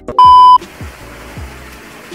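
A loud 1 kHz test-tone beep, the television colour-bars tone used as an editing effect, lasting about a third of a second shortly after the start. It plays over background music with a steady beat.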